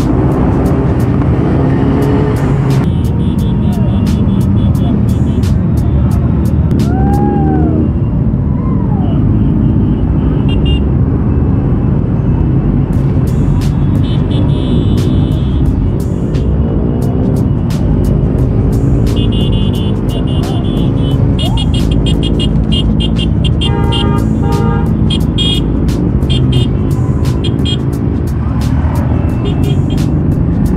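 Engines of a large group of motorcycles riding together, heard from a Royal Enfield Classic 350 single-cylinder bike in the pack, with steady road and engine noise. Music with a steady beat plays over it throughout.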